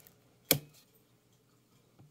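A single sharp knock about half a second in, from a soap loaf and slice being handled on a wooden soap cutter with a plastic cutting bed.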